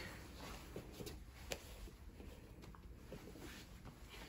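Faint rustling of gi cloth and bodies shifting on a grappling mat, with a few light taps, the clearest about a second and a half in.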